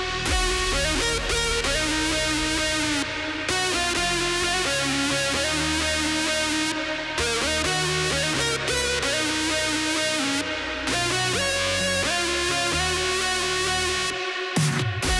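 Electronic dance track playing back. A distorted saw-wave synth lead, built in Sylenth1, carries the melody with pitch bends that glide into each next note, over chords and bass. The top end thins out briefly about every three and a half seconds, at the ends of phrases.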